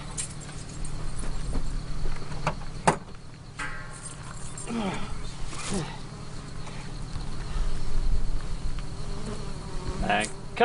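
Flies buzzing close to the microphone: a steady low drone, with a couple of passes that fall in pitch about halfway through and a single sharp click a few seconds in.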